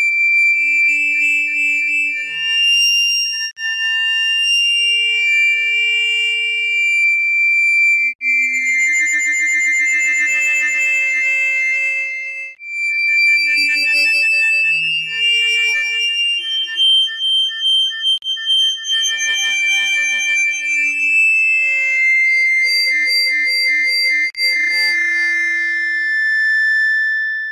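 Music: long, high held tones that glide from one pitch to the next, with a faint low drone underneath.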